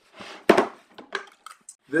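A sharp knock about half a second in, then a few lighter clicks: a small metal first-aid tin being lifted out of its compartment in a clear plastic tackle box, knocking against the plastic.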